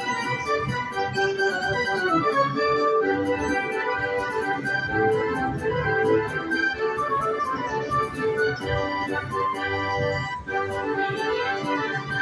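5 Dragons Rapid slot machine playing its electronic, organ-like bonus win music while the win meter counts up, with a run of short high ticks over the melody.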